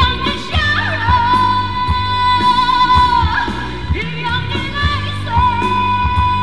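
A woman singing a Mandarin pop ballad live into a microphone over amplified backing music with a steady beat and bass, holding long notes with slight vibrato.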